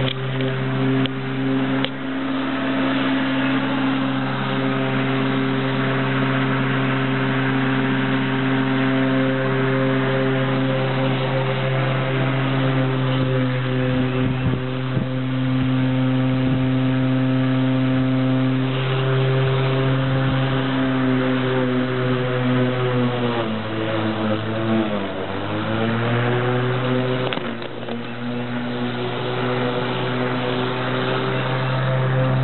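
Corded electric lawn mower running with a steady motor hum. Late on, its pitch sags for a couple of seconds and then recovers.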